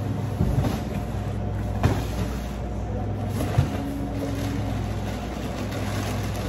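A steady low hum, with a few sharp knocks and thumps as cardboard cases of chips are lifted off a hand truck and set down. The loudest knock comes a little past halfway.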